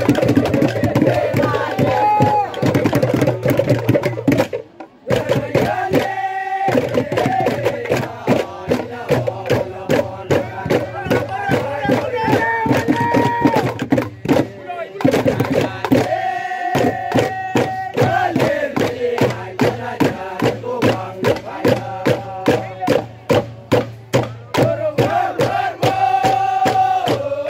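Group of men singing and chanting a traditional Tolai dance song over a fast, steady percussion beat. The voices hold long notes at several points, and the music breaks off briefly about five and again about fifteen seconds in before starting up again.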